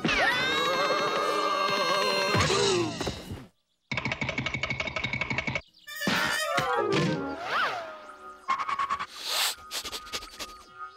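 Cartoon background score punctuated by slapstick sound effects, with sliding pitches and short hits. The sound cuts out completely for a moment about three and a half seconds in, then comes back as rapid rhythmic pulsing followed by more effects.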